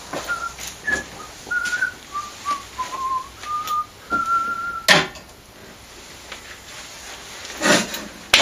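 A person whistling a short melody of about ten notes, the last held longer. It cuts off with a sharp knock about five seconds in, and there is a clatter near the end.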